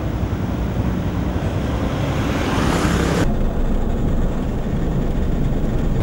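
Street traffic with vehicle engines running. A vehicle grows louder about two to three seconds in, then the sound cuts abruptly to a quieter, steady rumble.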